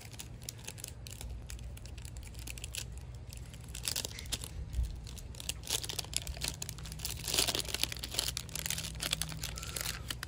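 A foil snack pouch from a One Chip Challenge being torn open and crinkled by hand, with louder crackling bursts about four seconds in and again around seven to eight seconds.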